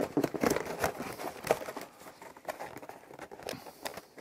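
A cardboard toy box being closed by hand: the lid and flaps rustle, scrape and tap against the box, busy at first and thinning out after about two seconds.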